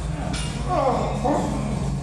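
A person's voice, wavering and bending in pitch, over steady background music, with a short sharp click about half a second in.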